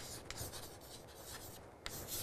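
Chalk writing on a chalkboard: faint scratching strokes with a few light clicks of the chalk against the board.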